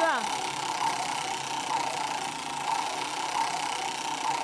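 Large upright game-show prize wheel spinning fast, its rim clattering past the pointer in a rapid, steady rattle.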